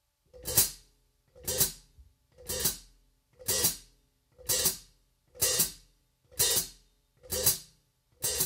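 Hi-hat cymbals played with the foot pedal alone using the heel-toe technique: eight strokes at about one per second. Each is a quick pair, a short splash closed off by a stronger chick.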